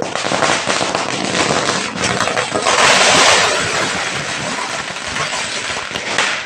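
A string of firecrackers going off in a rapid, dense crackle, loudest about halfway through.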